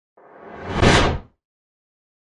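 A whoosh sound effect that swells over about a second and then cuts off sharply.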